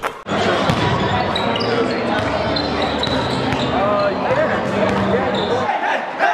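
Basketballs bouncing on a gym floor amid many voices talking in a large hall. The low part of the sound drops out shortly before the end.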